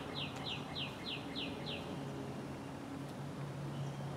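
A songbird singing a quick run of downslurred whistled notes, about four a second, that stops a little before halfway through. A faint steady low hum runs underneath.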